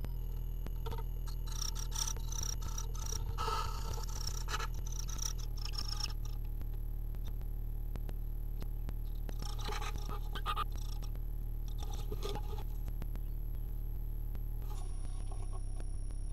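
Tits inside a wooden nest box giving runs of short, high-pitched chirps in the first few seconds, with scratching and rustling as they tug and peck at the carpet lining. A steady low hum runs underneath.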